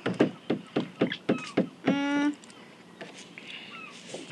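A quick, uneven run of about eight light clicks or taps over the first couple of seconds, then a short, steady, hummed "mm" from a child while tasting the food.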